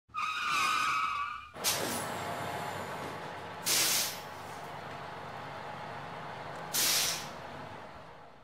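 Intro sound effects of a bus. A brief pitched tone comes first, then an engine runs steadily under two short, loud hisses like air-brake releases, about four and seven seconds in, and the sound fades out at the end.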